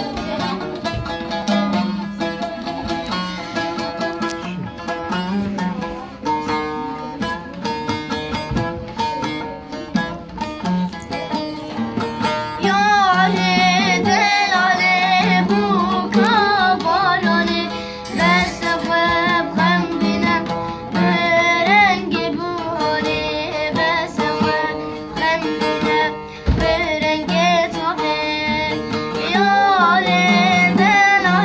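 A saz (long-necked lute) strummed and plucked in a steady rhythm, with children clapping along. From about twelve seconds in, a boy's voice sings a folk song over it.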